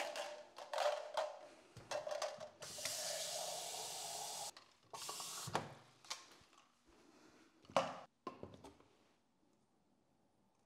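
Plastic shaker cup being handled, with scattered knocks and clunks on the counter, and a tap running for about two seconds as the cup is filled with water.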